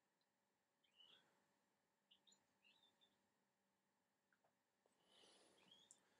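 Near silence: room tone with a few faint, short high chirps, like a small bird calling outside.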